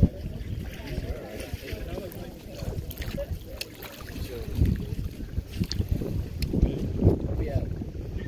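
Wind buffeting the microphone as a steady low rumble, with faint voices in the distance.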